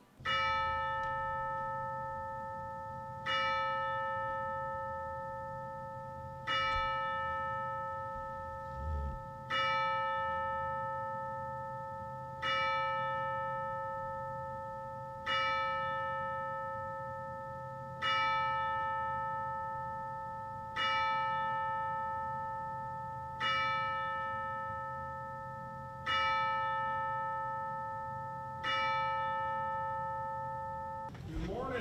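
A single church bell tolled eleven times, one stroke about every three seconds, each stroke ringing on at the same pitch and fading before the next.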